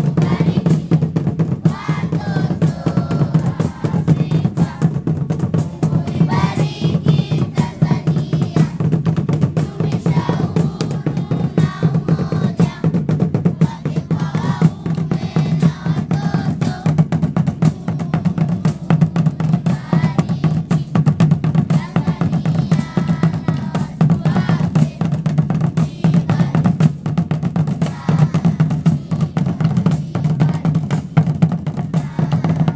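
A large group of schoolchildren singing together, accompanied by a school drum band playing snare and bass drums in rapid, continuous strokes.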